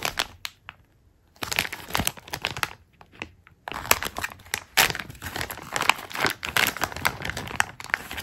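Clear plastic zip bag crinkling as it is handled with a stack of round vinyl stickers inside. It comes in short spells with brief pauses, then runs continuously from about halfway through.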